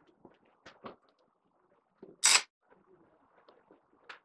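Hands fitting a wooden block into bent mandolin sides in a wooden mold, with a few soft wood knocks, then one loud, short noise about two seconds in as the pieces are handled.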